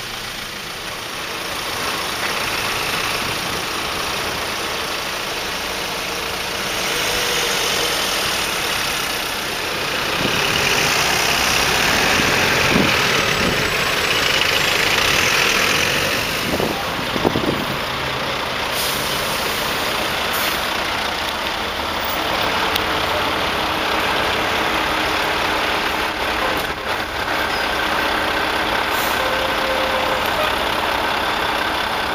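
Heavy diesel lorry engine running as a Volvo tractor unit hauling a railway carriage on a low-loader moves slowly past and manoeuvres, with road traffic noise; it grows louder in the middle as the lorry comes close.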